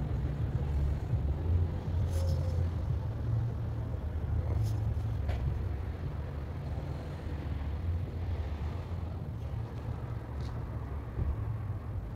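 Street traffic: a steady low rumble of car engines and tyres, with a car passing slowly close by.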